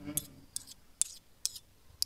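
A brief low voiced sound at the start, then sharp clicks about every half second, some coming in quick pairs.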